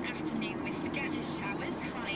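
A voice from the car radio, heard inside a moving car over steady road and engine noise.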